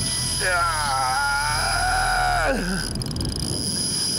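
A man's long drawn-out shout of excitement, wavering and then dropping in pitch as it ends, over a steady low rumble that fades out at the same moment.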